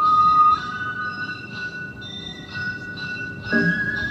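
Japanese festival music for a lion dance (shishimai): a bamboo transverse flute plays long held notes, loud at first and then softer after a step up in pitch about half a second in. Near the end, a run of struck percussion joins it.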